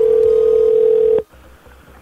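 Telephone ringback tone heard down a phone line: one steady ring tone that cuts off suddenly about a second in as the call is answered.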